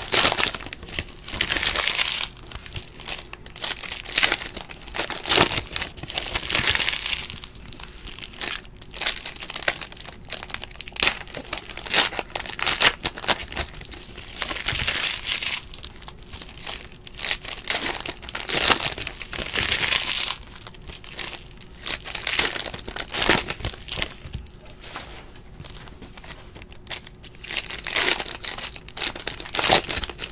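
Foil wrappers of Panini Revolution basketball card packs crinkling in irregular bursts as the packs are handled and opened by hand.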